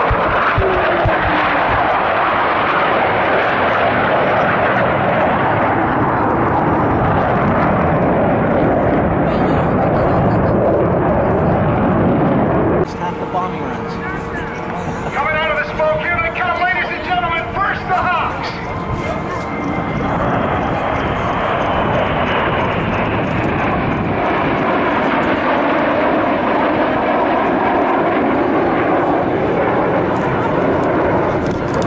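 CF-18 Hornet fighter jets flying low past the crowd. Their engines make a loud, steady roar, with a falling whine as one passes near the start. About 13 s in, the roar drops away for several seconds and a voice is heard, then the jet roar returns.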